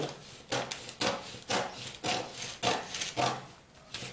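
Scissors cutting through brown kraft pattern paper: about six crisp snips, roughly two a second, with a quieter pause near the end.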